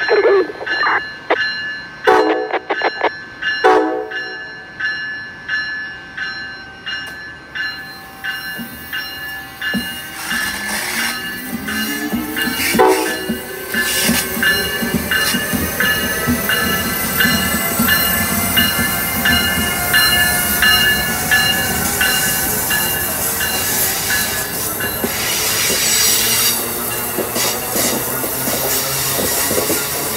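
Amtrak ACS-64 electric locomotive sounding its horn in several short blasts as it approaches, then the train passing through the station, with rail and wheel noise building and a gliding whine.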